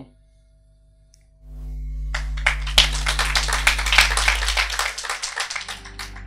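Audience applauding, starting about a second and a half in and lasting about four seconds before fading.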